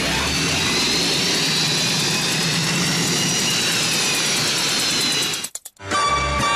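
Jet engine sound effect: a steady rushing noise with a high whine that drifts slightly down in pitch, cutting off suddenly shortly before the end.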